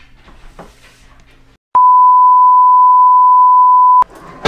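An edited-in sine-wave beep: one loud, steady tone that starts suddenly a little under two seconds in, holds for over two seconds and cuts off sharply. Before it there is only faint room sound with a few small clicks.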